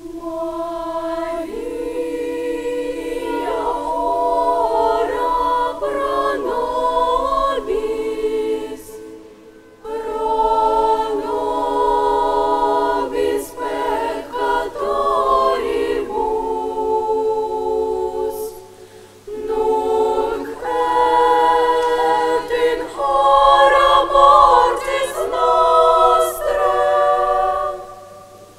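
Children's choir singing unaccompanied, holding long chords in three phrases with short breaks about 9 and 19 seconds in.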